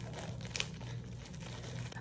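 Plastic packaging crinkling softly as it is handled, with a sharper crackle about half a second in.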